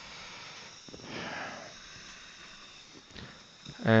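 Quiet steady hiss, with a short breath through the nose about a second in and a faint click a little after three seconds.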